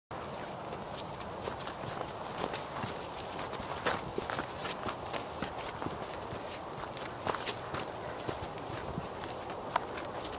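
Footsteps of people and dogs walking on a dirt forest trail: irregular soft steps and sharp clicks over a steady background hiss.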